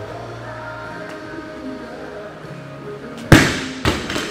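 Background music, then, a little over three seconds in, a barbell loaded with rubber bumper plates is dropped from overhead onto rubber gym flooring, landing with one loud bang and a smaller second impact half a second later as it bounces.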